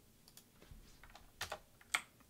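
Computer keyboard keys pressed a few times: light taps, then two sharper key clicks about half a second apart near the end.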